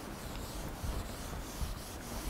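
Whiteboard eraser rubbing across a whiteboard, wiping off marker writing in faint repeated strokes.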